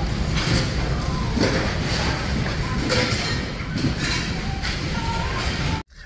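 Busy thrift-store room sound: a dense wash of shoppers' distant voices and rummaging, with music in the background. It cuts off suddenly near the end.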